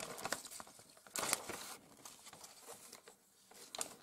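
Light rustling and crinkling of paper and plastic packaging being handled, in a few short bursts, the loudest about a second in.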